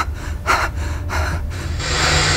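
A person gasping and breathing hard: several short, sharp breaths, then a longer one near the end, over a low steady hum.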